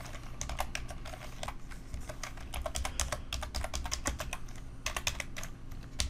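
Typing on a computer keyboard: quick runs of keystrokes, thinning out past the middle, then a last short burst near the end. A faint steady low hum runs underneath.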